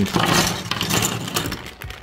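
A clear plastic parts bag crinkling as it is handled and opened, with small hard plastic toy pieces clicking and rattling inside. It stops shortly before the end.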